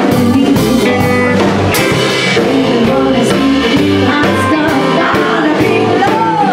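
A live band playing: a woman singing over electric bass, keyboard and a drum kit keeping a steady beat with cymbal hits.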